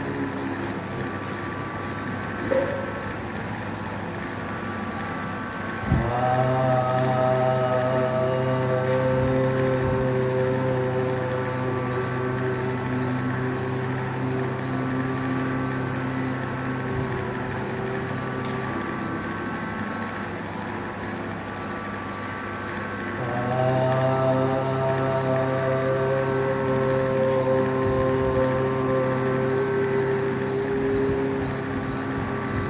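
A man's deep voice humming long sustained tones with hands closing the ears, as part of a yoga breathing practice. Two long hums begin about 6 s and about 23 s in, each held for around 13 seconds, with fainter hums from other voices continuing underneath.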